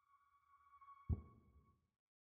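Quiet, with faint steady high-pitched tones and a single soft knock about a second in that dies away quickly.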